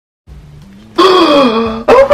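A man's drawn-out vocal exclamation, a long "ohh" that slides down in pitch, coming in about a second after a brief hush of room tone. Speech follows right after it near the end.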